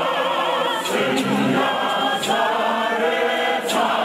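Men's church choir singing a cappella: several male voices holding long notes together in a hymn, with no instruments.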